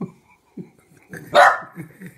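Small dog barking at a stuffed toy dog: one loud bark about a second and a half in, with a few softer, shorter sounds around it.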